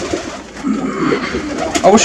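Several domestic pigeons cooing in a loft, low warbling calls overlapping one another throughout; a man's voice starts just at the end.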